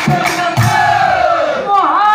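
Nagara naam devotional chanting: a man's loud singing voice with a chorus of voices, drawing out one long falling note. Two low nagara drum strokes sound in the first second.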